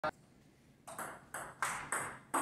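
Table tennis rally: a celluloid ball clicking sharply off the paddles and the table, five quick hits in two seconds.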